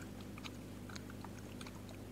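Faint computer keyboard keystrokes, a few scattered clicks as a file is edited and saved in a text editor, over a steady low hum.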